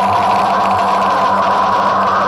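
A male vocalist holding one long, steady screamed note into cupped hands over a heavy metal backing track.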